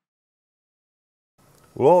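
Dead silence for most of the stretch, then a man's voice begins near the end.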